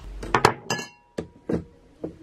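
About five sharp clinks of metal and glass in quick succession, one leaving a short ringing tone, as a stainless steel lidded pot and a glass are handled.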